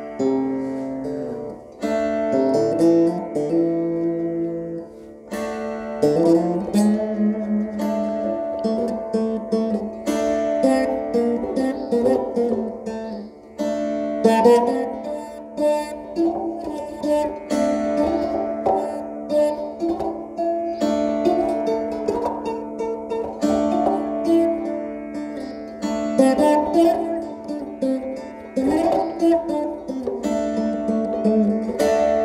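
Saraswati veena played solo: a plucked melody in which many notes slide up or down in pitch as they ring on.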